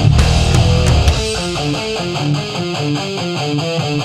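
Groove metal studio recording: the full band with heavy bass plays for about the first second, then the low end drops away and a guitar picks a repeating run of single notes over a steady ticking beat.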